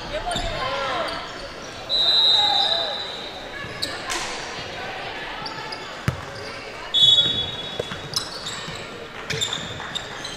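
A referee's whistle blows twice, a shrill blast of just under a second about two seconds in and a shorter one around seven seconds in. Under it are sneaker squeaks on the court floor, a few basketball bounces and crowd chatter echoing in the gym.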